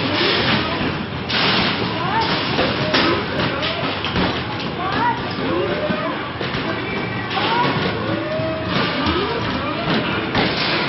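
Busy arcade din: music and electronic game sounds with many short gliding tones, mixed with people's voices, going on without a break.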